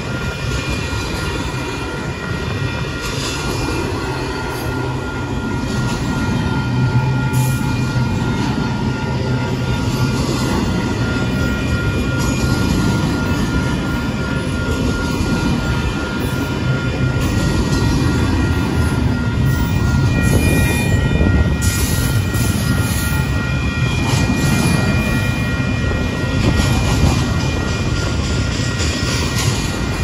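Double-stack intermodal well cars of a Union Pacific freight train rolling by: a steady rumble of steel wheels on rail with scattered clanks, and a steady high-pitched ringing note over it throughout.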